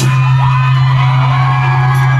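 Live rock band's amplified electric guitars and bass holding one sustained low note, ringing on steadily between songs.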